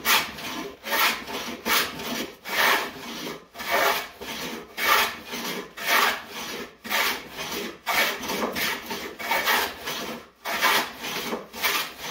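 Stanley No. 3 (Type 8) hand plane shaving the narrow edge of an old door-jamb board, in a steady run of repeated planing strokes, about three every two seconds.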